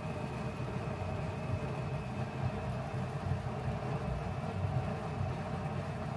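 Steady low hum of kitchen background noise, with no music and no sudden sounds.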